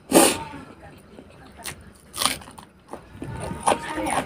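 Close-miked eating sounds: wet chewing and mouth smacks from someone eating rice and pork fry, in several short bursts, the loudest right at the start.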